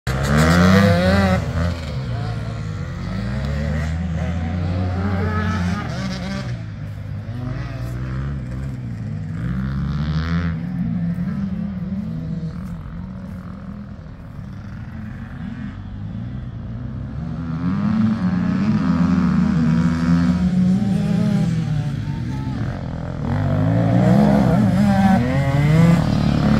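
Off-road motorcycle engines revving and passing on a dirt track, the pitch rising and falling with each throttle change. Loud near the start, quietest about halfway, then louder again as bikes come closer in the last third.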